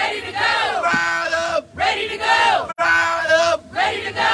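Rally chant shouted into a microphone, a leader and crowd trading short repeated phrases about every second and a half.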